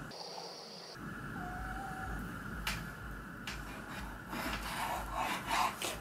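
Chef's knife slicing raw chicken breast on a wooden cutting board, heard faintly. Soft cuts and scrapes of the blade come with a few light taps on the wood, growing busier in the second half.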